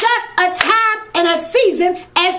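A woman's loud, impassioned vocalising in short bursts that slide up and down in pitch, with sharp hand claps near the start and about half a second in.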